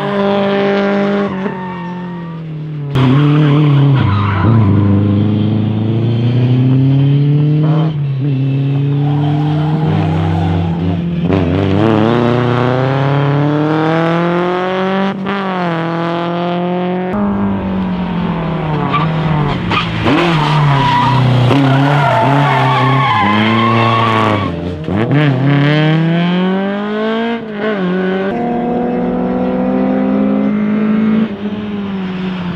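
Lada rally cars' four-cylinder engines revving hard, their pitch climbing and dropping with throttle and gear changes as they are thrown around tyre markers, with tyres squealing and skidding on the tarmac. The sound jumps abruptly several times as one car gives way to another.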